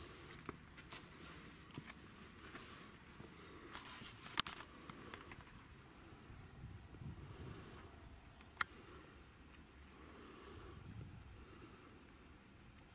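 Faint background noise with scattered small scuffs and ticks, and two sharp clicks, one about four seconds in and another a little past eight seconds.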